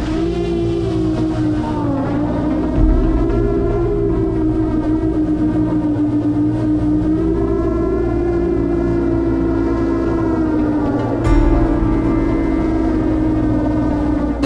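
Motors and 10-inch propellers of an iFlight Nazgul XL10 long-range FPV drone in flight, whining in a pitch that rises as it spools up and then wavers up and down with the throttle, under background music.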